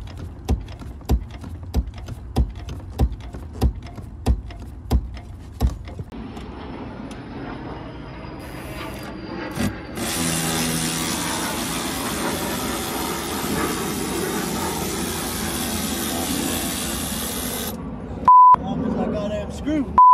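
Clutch pedal of a BMW E34 525i being pumped by hand, about ten knocks at roughly one and a half a second, bleeding the clutch hydraulics after a slave cylinder replacement. Later a steady noise runs on, and a short loud beep comes near the end.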